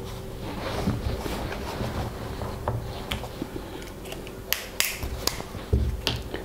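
Small scattered clicks and taps from a partly dismantled plastic DPDT rocker switch being handled in the fingers, its plastic housing and metal contacts knocking together. A few sharper clicks come in the second half.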